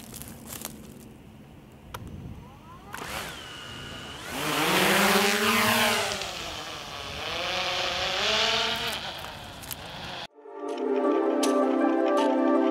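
DJI Mavic 2 Pro quadcopter motors spinning up for takeoff: a high whine starts about three seconds in, then a loud propeller buzz whose pitch rises and falls as the drone lifts off and climbs. About ten seconds in the sound cuts off abruptly and music takes over.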